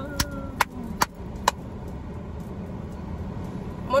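Car cabin noise: a steady low engine and road rumble inside the car, with a run of sharp clicks about twice a second in the first second and a half.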